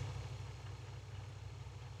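A pause in speech holding only a steady low electrical hum with faint hiss.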